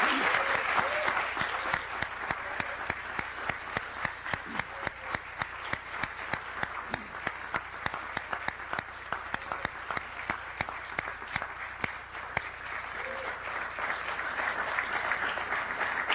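Audience applauding, many hands clapping. It is loudest at first, thins a little through the middle so that single claps stand out, and swells again near the end.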